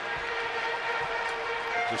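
A steady held chord of ballpark music over the general noise of a stadium crowd.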